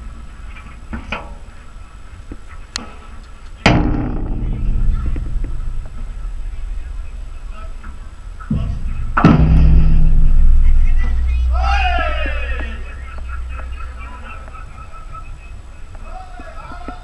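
A few sharp pops of a padel ball off the rackets, then a louder mix of music and voices, with a voice calling out late on.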